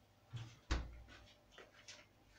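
Freezer door being shut: a soft knock, then a heavier thud about three quarters of a second in, followed by a few faint clicks.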